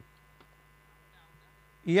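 Low, steady electrical mains hum, with a man's voice starting loudly near the end.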